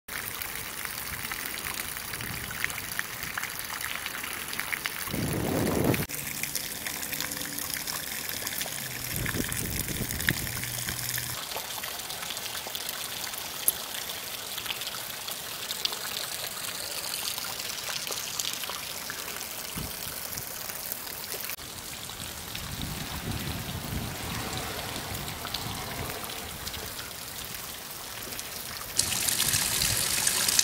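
Rain and runoff water: a steady hiss of rain with water splashing on pavement and pouring in a stream off a roof edge. The sound changes abruptly a few times.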